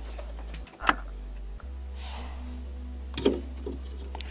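Two sharp clicks, about two seconds apart, and light rattling as a hand works at the clutch pedal switch and its wiring behind the dashboard, over a steady low hum.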